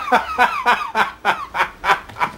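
A man laughing hard: a run of short bursts, about three to four a second, each falling in pitch.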